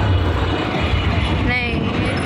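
Street traffic noise with a steady low rumble, heard from a moving two-wheeler, and a short wavering voice call about one and a half seconds in.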